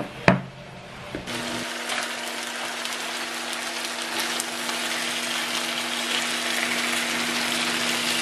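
Marinated chicken tenderloins sizzling in oil in a nonstick skillet: a steady hiss that starts about a second in and slowly grows, with a steady low hum underneath. A single short knock comes just before it.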